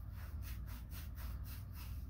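Faint, quick scratching at about five strokes a second from a hand rubbing over hair and a cap, over a steady low hum.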